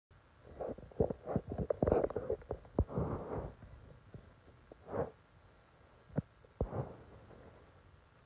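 Close handling noise: rustling of clothing and soft knocks against the camera, dense for the first three and a half seconds, then a rustle about five seconds in and two sharp knocks between six and seven seconds.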